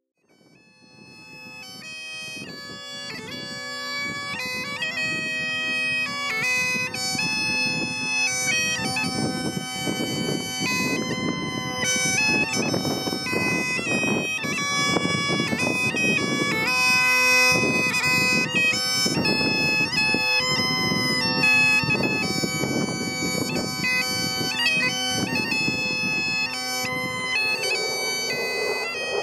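Bagpipe music: a melody over a steady drone, fading in over the first few seconds and then holding a steady level.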